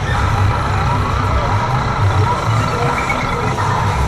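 Arcade din: an electronic tone from a game machine is held from just after the start until near the end. Under it run a steady low rumble and background chatter.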